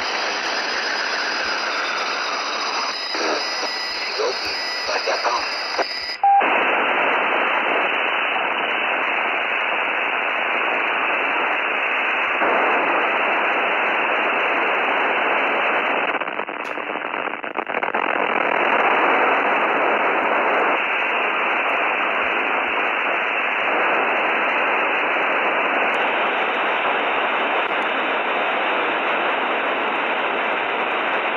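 Radio receiver audio from a software-defined radio tuned to the 27.100 MHz CB repeater channel: a steady rush of static with faint voice under it. The hiss changes abruptly about six seconds in and widens near the end as the receive filter bandwidth is dragged wider.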